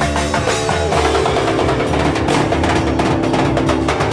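Live band playing an instrumental passage: drum kit and congas keep a steady beat over bass notes and held chords.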